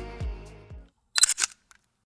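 Background electronic music with a bass beat stops about a second in. It is followed by a quick, loud double click of a camera shutter, a sound effect over the cut to a photo.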